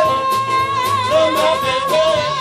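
Live band playing a song with drums and electric bass, topped by one long high note with vibrato held through the whole stretch, with steady cymbal strokes on top.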